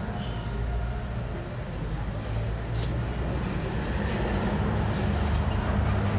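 Low, steady engine hum, slowly growing a little louder, with a single sharp click about three seconds in.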